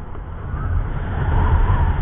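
Low wind rumble on the microphone together with the running of a Hero Honda Passion Plus 100 cc single-cylinder motorcycle being ridden along a road.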